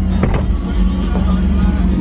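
A 2008 Cadillac Escalade ESV's 6.2-litre V8 idling, heard from inside the cabin. A couple of clicks from the overhead sunroof switch come about a quarter second in, and the sunroof motor then slides the glass open.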